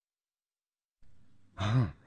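A person's sigh: silence, then a faint breath about halfway through and a brief low voiced sigh near the end.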